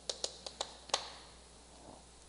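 Chalk tapping against a chalkboard while writing characters: a quick run of about five short, sharp clicks in the first second, then they stop.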